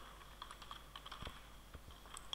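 Faint, irregular keystrokes on a computer keyboard as a short word is typed.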